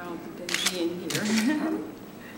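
Press photographers' single-lens reflex camera shutters clicking in two quick clusters, about half a second in and again just after one second, over low voices in the room.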